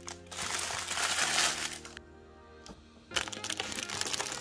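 Clear plastic packaging crinkling as a large bag of burlap-wrapped popcorn samples is handled and opened, pausing for about a second midway. Soft background music plays underneath.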